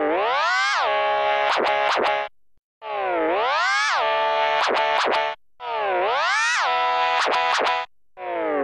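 Synthesized organ tone from the Organito 2 VST plugin's 'Organito 6' preset, one note sounded three times about 2.7 s apart. Each note swoops down and then up in pitch, settles on a steady rich tone, and has a few sharp clicks near its end before cutting off.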